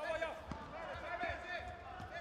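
Fighters' feet squeaking and thudding on the taekwondo competition mat as they bounce and shift during sparring: many short squeaks with a few dull thumps.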